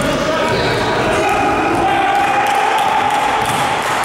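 A basketball being dribbled on the court floor during a game, with players' voices calling out in the hall.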